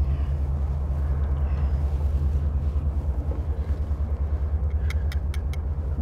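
A steady low rumble with a pulsing hum, like an engine running. About five sharp clicks come close together near the end.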